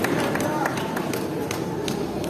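Many voices of a church congregation praying and calling out at once, with sharp taps about twice a second.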